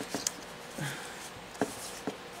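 A few light clicks and soft rustling as a sheet of paper is slid into place on a plastic paper trimmer.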